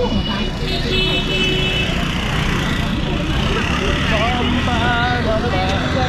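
Street traffic at an intersection: scooters, motorcycles and motor tricycles running past under a steady rumble, with voices mixed in.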